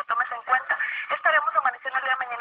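Only speech: a woman speaking Spanish, reading a weather forecast.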